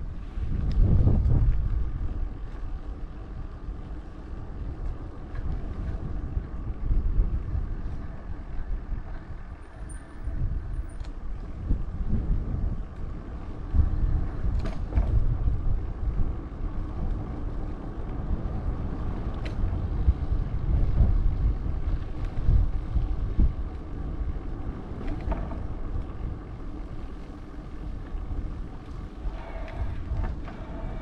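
Wind buffeting the microphone of a moving rider in uneven gusts, with a faint steady hum underneath.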